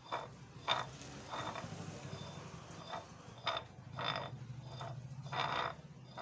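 Steel blades of an oil expeller's barrel scraping and clinking against one another in short bursts as they are turned and pressed tight into place by hand, over a low steady hum.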